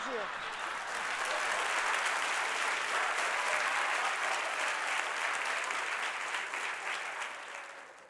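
Studio audience applauding steadily, then dying away near the end.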